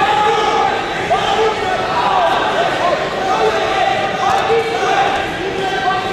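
People talking in a large, echoing gymnasium, with repeated bouncing thumps.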